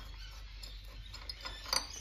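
Quiet, steady background hum with a faint click near the end, from handling the freshly removed spark plug.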